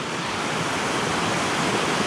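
A fast-flowing river rushing over rocks and boulders: a steady, even sound of running water.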